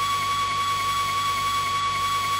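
A steady, high, pure electronic tone held at one pitch, with a faint low hum underneath: a sustained synthesized drone within a early-'90s Australian hardcore/breakcore track.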